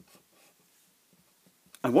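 Felt-tip marker drawing on paper: a few faint, short scratching strokes.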